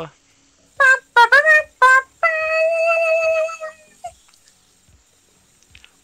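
A short trumpet fanfare: three quick notes, the second bending upward, then one long held note that fades out. It heralds a score reveal.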